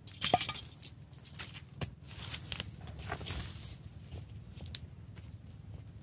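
A blade digging into moist earth around a small tree's root ball: irregular crunching and scraping strokes with sharp clicks, loudest just after the start.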